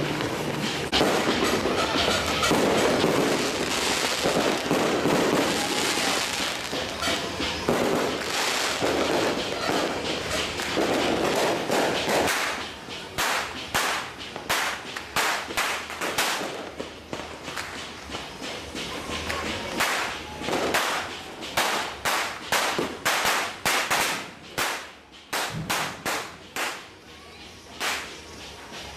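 Firecrackers going off: a dense, loud barrage for the first twelve seconds or so, then a quieter run of separate sharp bangs at irregular intervals, sometimes several a second.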